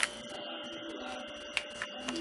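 Quiet indoor room tone: a steady faint hum with a few light clicks, the clearest about one and a half seconds in.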